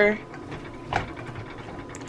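Silicone spatula stirring sautéed vegetables and greens in a skillet: soft scraping and shuffling of the food against the pan, with one brief louder scrape about a second in.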